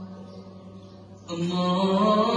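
Chant-like singing in long, steady held notes. A little after a second in, a louder held note comes in.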